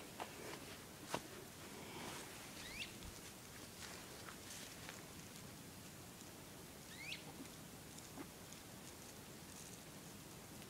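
Faint footsteps and small crunches on dry, cracked mud, with scattered light clicks. Two short rising chirps come through, about three seconds in and again about seven seconds in.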